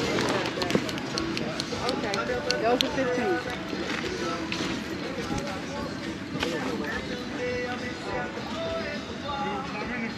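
Music playing with voices over it, along with small clicks and handling noises.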